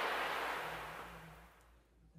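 A whoosh of hissing noise that swells and then fades away over the first couple of seconds, like an editing transition effect laid over a scene change.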